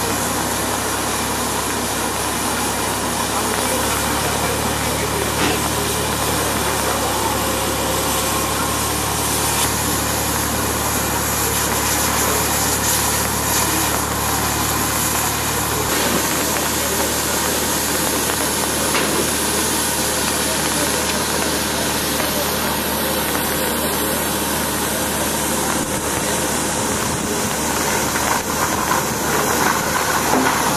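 Steady hiss of steam from Bulleid West Country class steam locomotive 34027 Taw Valley, with a low, even hum underneath and no exhaust beat.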